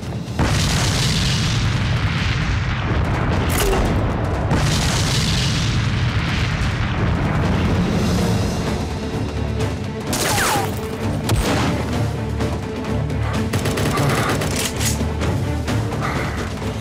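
Battle sound effects for a staged firefight: rapid rifle fire and explosions, dense and unbroken, mixed over background music.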